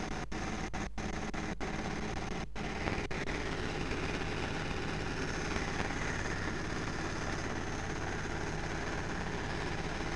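A boat's engine running steadily. The sound cuts out briefly several times in the first three seconds.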